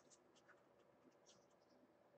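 Near silence with faint, light ticks and scratches from small hand handling noises, stopping near the end.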